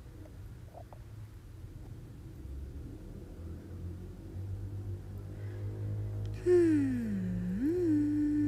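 Faint steady low hum in the background for most of the stretch; about six and a half seconds in, a woman hums one slow note that slides down, comes back up and then holds.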